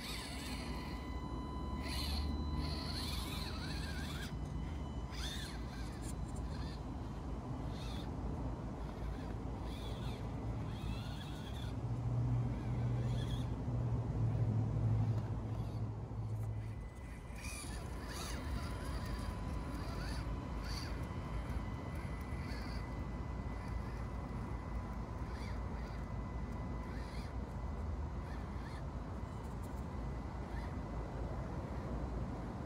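Axial SCX24 micro RC crawler's small electric motor and gears running as it crawls over dirt and rocks, with scattered small clicks. The sound swells for a few seconds in the middle and drops suddenly after.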